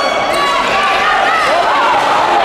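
Indoor handball play: sports shoes squeaking on the court floor and the ball bouncing, over voices in the hall.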